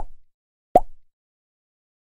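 Two short pop sound effects from an animated subscribe-and-like button, about three-quarters of a second apart, each a quick bright pop that dies away at once.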